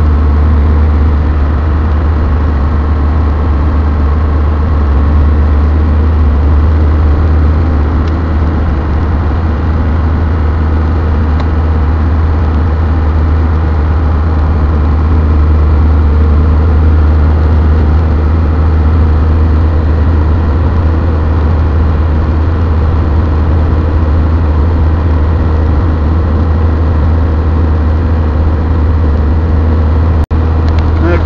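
Cummins inline-six turbo diesel in a Dodge Ram pickup, heard from inside the cab while cruising steadily at about 1,500 rpm and 50 mph with road noise. The engine is still warming up.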